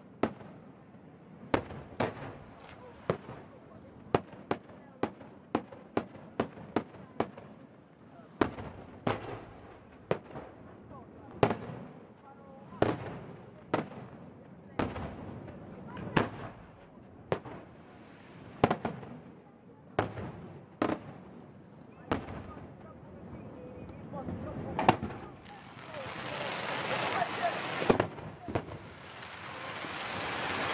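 Fireworks display: aerial shells bursting in a long irregular string of sharp bangs, often one or two a second. Near the end a dense rising hiss builds up under the bangs.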